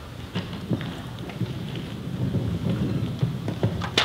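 Rustling and handling noise close to the lectern microphone, a low rumble with scattered small clicks and one sharper click near the end.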